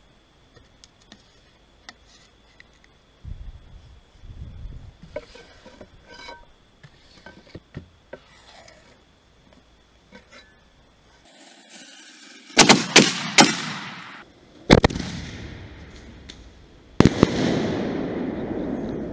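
Fireworks going off: a quick run of sharp bangs about two-thirds of the way in, then a single bang, then a louder bang near the end with a long hissing tail. Before them there are only faint handling sounds as a tube launcher is rigged.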